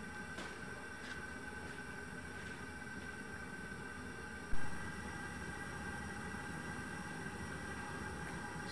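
Propane gas forge burner running with a steady, low rush, turned down to a slow, fuel-rich flame. A single sharp thump comes about halfway through.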